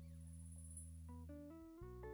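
Quiet background music with guitar: a held low chord, then a short run of rising notes in the second half.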